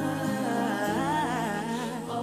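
A single voice singing a slow, wavering melody with vibrato over sustained keyboard chords, as a church solo.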